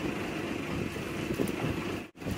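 Steady low rumble of a fishing boat's engine running, mixed with wind and water noise.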